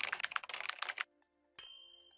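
Keyboard-typing sound effect: a quick run of key clicks for about a second, then a single bright ding that rings and fades.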